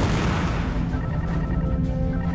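Explosion sound effect of a weapons hit on a starship, its noisy rumble fading over about the first second, over background music with held notes and a steady bass.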